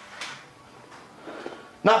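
A pause in a man's speaking voice, with only faint room noise and a soft brief rustle just after the start; his voice comes back near the end.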